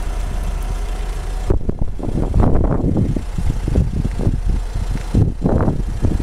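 Wind rumbling on the microphone: irregular low gusts starting about a second and a half in, over a steady low hum.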